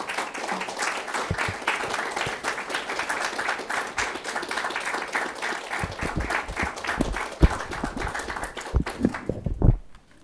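An audience applauding after a poetry reading, a dense patter of many hands clapping that stops suddenly at the end. A few low thumps come through in the second half.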